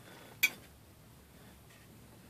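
A single sharp click about half a second in, like a hard plastic or metal tap, followed by near quiet while the 3D print is handled on the printer's glass bed.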